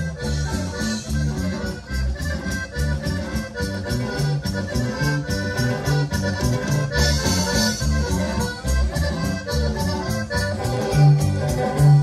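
Live band playing an instrumental passage of Mexican regional music: an accordion leads over bass and drums keeping a steady beat.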